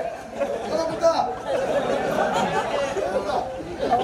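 Several voices talking and chattering at once.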